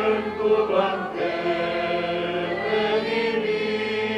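A choir singing a communion hymn, the voices holding long notes over a steady accompaniment.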